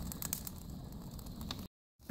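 Pallet and brush fire crackling faintly: scattered sharp pops over a low rush. The sound cuts off suddenly near the end.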